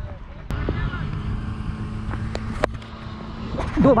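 A sharp knock about half a second in, then a steady low rumble with a faint hum on the helmet camera's microphone. Near the end comes a loud shout of "two, two", calling for a second run.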